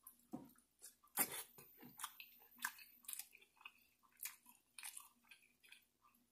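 Close-miked chewing of a mouthful of seafood boil dipped in sauce: faint, scattered wet mouth clicks and smacks, the strongest a little over a second in.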